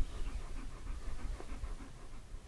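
A dog panting, about four to five quick breaths a second, with wind rumbling on the microphone.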